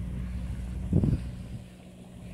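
An engine running steadily with a low hum, fading somewhat near the end. A short voice-like sound comes about a second in.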